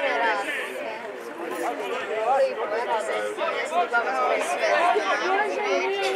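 Several people's voices talking over one another in indistinct chatter, with no single clear speaker.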